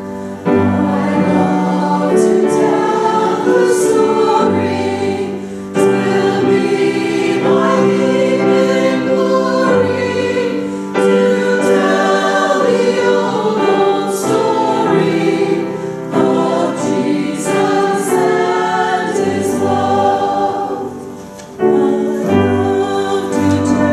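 Small mixed church choir singing from songbooks, in long held phrases with brief breaks between them.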